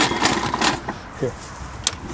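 Murray push mower's Briggs & Stratton Quantum 4.5 hp engine being pull-started cold on choke: a loud burst of cord-pull and cranking noise in the first second, and a sharp click near the end.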